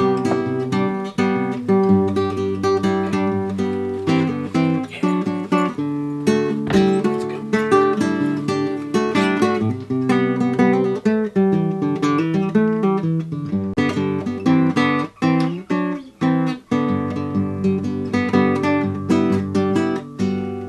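Theme music played on acoustic guitar, with chords strummed and picked in a steady, rapid rhythm.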